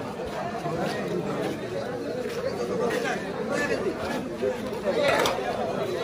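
Crowd chatter at a busy market: many voices talking over one another, with a brief sharp sound about five seconds in.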